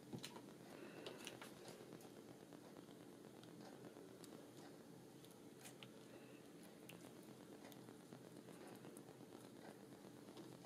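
Near silence: faint room hum with scattered small clicks and crackles from hands handling a paper card and paper flower embellishments while hot-gluing them in place.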